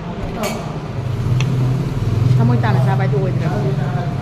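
Indistinct background voices over a steady low hum that swells louder through the middle, with a couple of light clicks.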